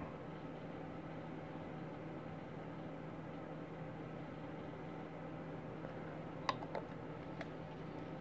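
Quiet room tone with a steady low hum, and a few faint clicks late on as small plastic model-kit parts and a glue bottle are handled.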